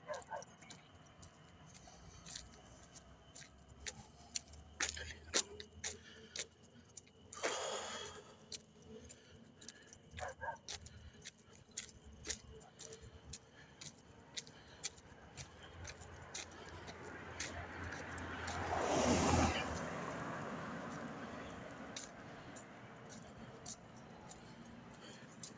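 Scattered clicks and knocks of a phone being handled while its holder moves along a street, over a low rumble. About three-quarters of the way through a passing vehicle rises to the loudest point and then fades away over a few seconds.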